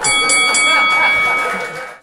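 A bell rung in a quick run of strikes, its bright multi-pitched ringing fading out near the end, over an audience laughing.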